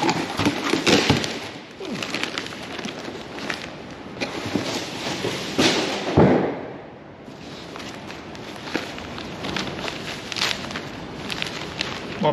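Newspaper crinkling and rustling as a long wooden propeller wrapped in newspaper is handled, lifted from a cardboard box and unwrapped, with a louder burst of crackling and bumping about six seconds in.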